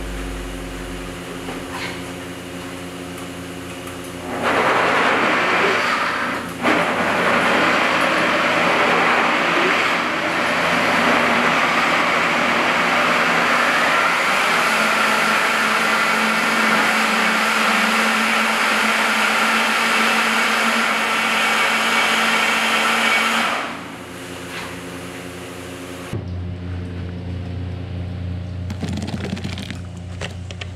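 Commercial countertop blenders grinding chopped red beets into purée: a loud, steady blending noise starts about four seconds in, runs for about twenty seconds and stops, with a low steady hum before and after.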